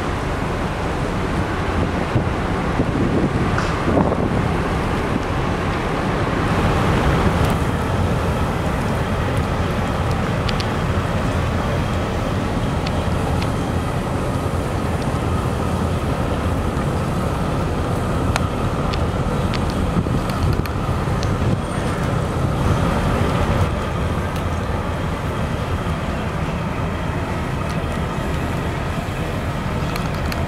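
Wind buffeting the microphone outdoors, a steady rushing rumble with a few faint clicks.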